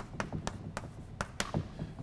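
Chalk tapping against a blackboard while an equation is written, heard as a quick irregular series of sharp clicks.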